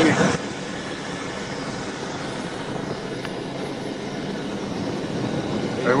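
Helicopter cabin noise picked up through a phone microphone: a steady rushing drone from the spinning rotor and engine, slowly building, after a brief louder burst at the very start.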